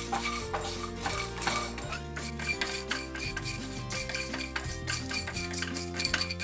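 Wooden spatula stirring and scraping dry whole spices around a nonstick pan, a run of quick irregular scrapes and taps, over background music with long held notes.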